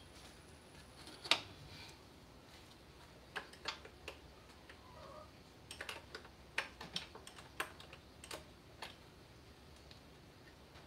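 Irregular light clicks and taps of hand tools and small metal parts being handled, one about a second in and a busier run in the second half. A faint high whine stops about a second in.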